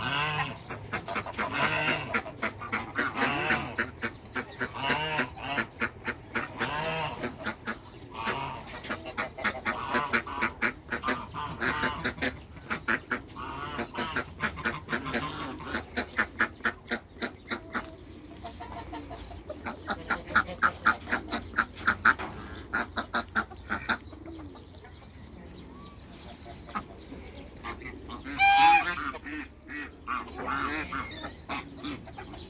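A flock of domestic geese honking, many short calls in quick succession. They fall quieter for a few seconds near the end, before one loud call.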